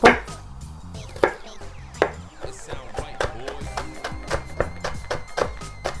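Chef's knife chopping a shallot on a wooden cutting board: a sharp knock at the start, two more spaced knocks, then quicker, lighter chopping at about three to four strokes a second, over background music.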